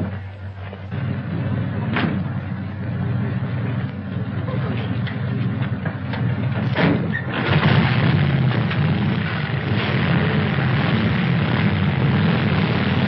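Police motorcycle and car engines starting up and running: a low rumble builds about a second in and grows much louder and rougher about seven seconds in. Two sharp knocks sound along the way.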